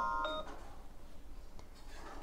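The tail of a chime of several steady ringing tones, which cuts off abruptly about half a second in, leaving faint room noise.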